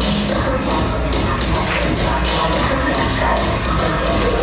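Recorded electronic dance music with a steady, driving beat and heavy bass.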